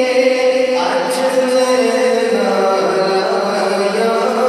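A man singing a naat, Urdu devotional praise poetry, into a microphone in a chant-like style with long held notes and no instruments; a new phrase comes in about a second in.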